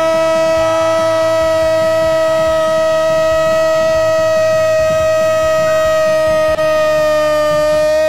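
Football commentator's prolonged "gooool" cry after a goal, one long held note at a steady, slowly falling pitch that breaks off near the end.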